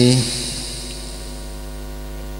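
A man's amplified voice trails off at the start, leaving a steady electrical mains hum from the public-address system.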